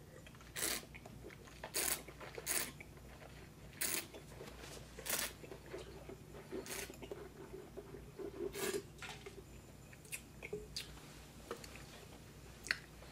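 Mouth sounds of wine tasting: a string of short, sharp sucking and swishing noises, about seven over the first nine seconds, as a mouthful of white wine is drawn in and worked around the mouth.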